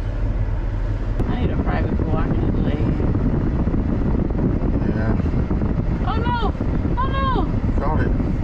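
Road and engine noise inside a moving Dodge car, a dense steady low rumble. A person in the car makes a few short vocal sounds near the end.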